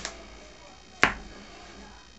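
A wooden spoon knocks once, sharply, against a stainless steel pot about a second in, while a stiff mashed potato mixture is being stirred.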